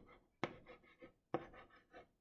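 Chalk writing on a small chalkboard: a few short, faint strokes, each starting sharply and trailing off, as letters are drawn.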